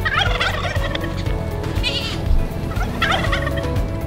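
A fowl calling three times in quick warbling runs, over steady background music.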